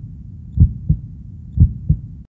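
Heartbeat sound effect: low double thumps in a lub-dub pattern, about one beat a second, twice.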